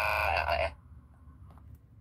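A loud, steady buzzer-like electronic tone with many overtones, cutting off suddenly under a second in, followed by faint room noise and a couple of light clicks.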